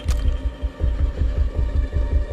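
Tense film score: a fast, low throbbing pulse of about five beats a second over a steady dark hum.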